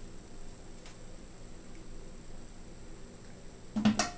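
Faint rustle of a comb drawn through hair over quiet room tone with a low steady hum. Near the end comes a short voice sound with a knock.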